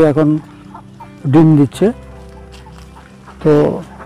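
Short calls from farm ducks, one about a second in and another near the end, over steady background music.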